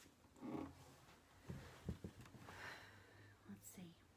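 Faint, quiet whispering or murmuring voice in a small room, with a few soft clicks about halfway through and a short hiss near the end.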